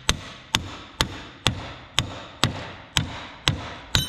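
Hammer blows on a pickle fork wedged between a tractor's tie rod end and steering arm, to separate the tie rod end's tapered stud from the arm. Nine steady strikes, a bit over two a second, each ringing briefly.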